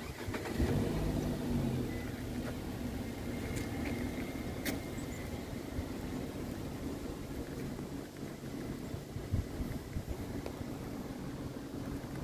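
A car engine starting about half a second in, running a little harder for a second or so, then idling steadily. A few sharp clicks are heard a few seconds in.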